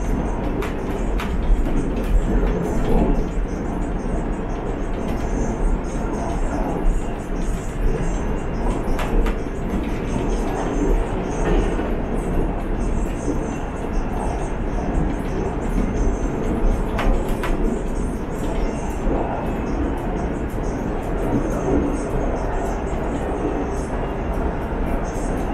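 Running noise of a KTM Class 92 electric multiple unit heard from inside a passenger car in motion: a steady rumble of wheels on rail with scattered sharp clicks and rattles.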